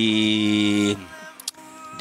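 A man's voice holding one long, steady drawn-out syllable for about a second as he searches for the next word. It then breaks off into a brief lull with a single click.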